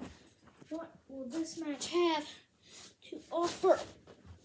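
A child's voice speaking in two short bursts, the words mostly unclear.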